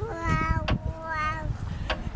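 A toddler's high-pitched "wow" vocalizing, two short calls in the first second or so, with two sharp clicks, one near the middle and one near the end.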